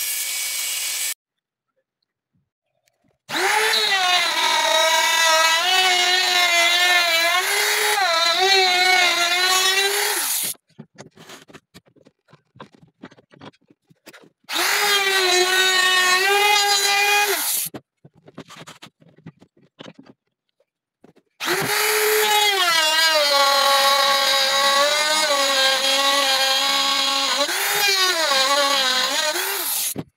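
A hand-held router running along the edge of a wooden pizza peel in three long stretches, a high whine whose pitch sags and recovers as the bit cuts into the wood, with scattered clicks and knocks between the runs. Briefly at the start, a band saw cutting the board.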